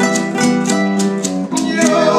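Two acoustic guitars playing an instrumental passage between verses, with maracas shaken in an even beat of about four strokes a second.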